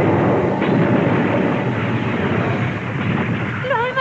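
A long, loud rumbling sound effect in an animated cartoon, of the kind used for a dragon's attack. Near the end, wavering high cries rise over the rumble as it dies down.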